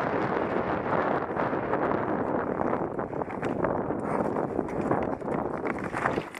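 Mountain bike descending a loose, rocky gravel trail: tyres crunching over stones and the bike rattling, with wind on the microphone. From about halfway in, a run of sharp clicks and knocks as the bike clatters over rocks.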